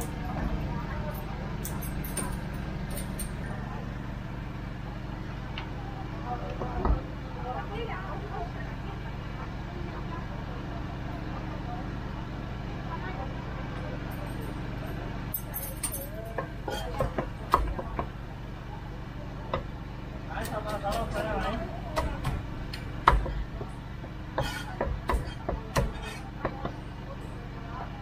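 Meat cleaver chopping roast duck on a thick round wooden chopping block. There is one chop about seven seconds in, then a cluster of sharp chops in the second half, over a steady low hum and background chatter.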